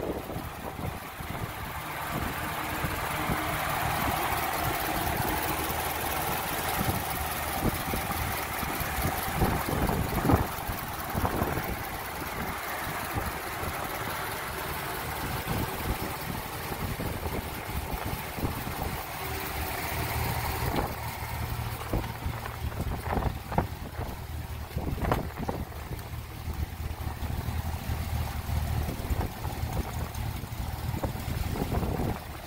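Volkswagen Passat GTS engine idling steadily, with wind and handling noise on a handheld phone microphone and a few short knocks. The low idle note gets fuller in the last third as the camera nears the tailpipe.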